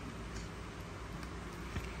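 Shimano Navi 3000 spinning reel being cranked by hand with the anti-reverse off, giving only a quiet, steady sound: the reel is running very smoothly.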